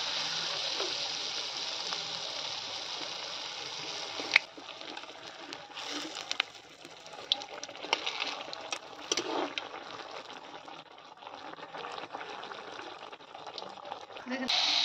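Jaggery pitha deep-frying in hot oil in an aluminium karai: a steady sizzle that turns quieter about four seconds in. Scattered clicks of a metal ladle and spatula against the pan follow as the cake is turned in the oil.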